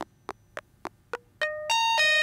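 Mutable Instruments Rings resonator module in a eurorack modular synth, played by a sequence while its damping is being modulated: first short, dry, clicky strikes about three or four a second, then about a second and a half in the notes ring out as sustained pitched tones, each step higher and louder.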